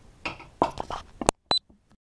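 Handling noise, a few knocks and rustles, as a hand reaches for the camera. The sound then cuts off suddenly, and a single short, high electronic beep follows, like a camera stopping its recording.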